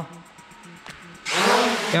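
The brushless motors and propellers of an SJRC F11S Pro 4K quadcopter drone spinning up for takeoff: a sudden loud rush of propeller noise that starts a little past halfway and runs on steadily.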